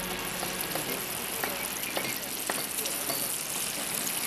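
Sausages sizzling on a grill grate, with a few light clicks of a fork on the grill.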